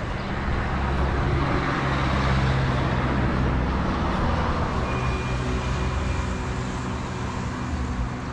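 Road traffic: a motor vehicle's engine hum with tyre noise, swelling a second or two in and then easing off.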